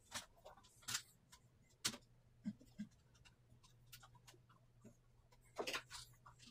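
Faint, scattered clicks and light scrapes of hands and a tool working the bare copper ground wire onto the green ground screw of a GFCI outlet, with a slightly louder cluster of clicks near the end.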